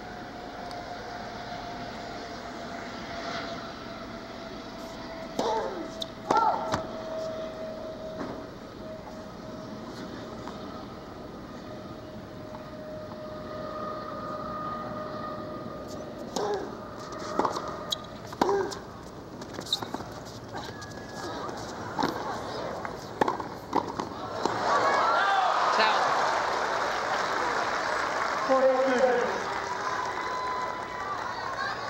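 Tennis ball struck by rackets in a rally, sharp pops about once a second over several strokes, with the crowd murmuring. Then the crowd breaks into cheering and applause as the point ends, with a few shouts near the end.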